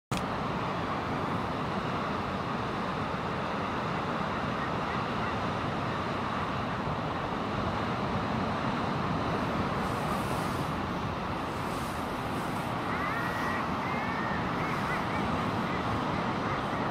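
A common guillemot breeding colony calling in a dense, steady chorus, with sea and wind noise beneath. A few short, high chirping notes come in about 13 seconds in.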